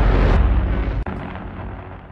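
Intro logo sound effect: a deep, rumbling fiery boom that slowly fades away, with a short crack about a second in.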